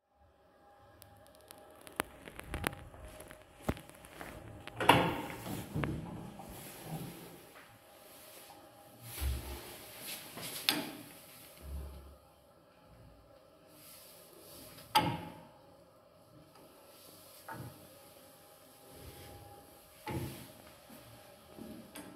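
A 1977 ZREMB passenger lift working: a string of mechanical clicks and clunks over a faint steady hum, with loud knocks about five, eleven, fifteen and twenty seconds in. Near the end its metal landing door bangs as it is opened.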